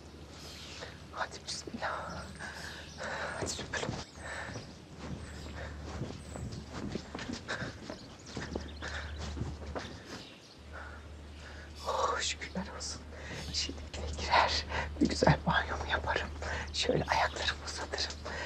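Footsteps, then a series of sharp knocks on a wooden front door, denser and louder in the last few seconds, with a woman muttering quietly. Nobody answers the knocking.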